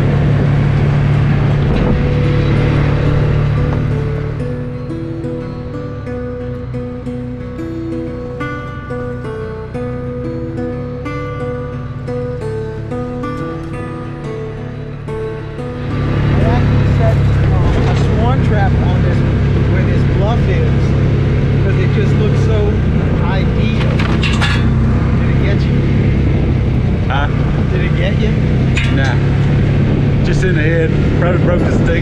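Side-by-side utility vehicle's engine running steadily at driving speed, with wind and rattling around the open cab. From about four seconds in to about sixteen, the engine sound drops lower and background music with a simple stepping melody plays over it. Then the engine comes back up loud.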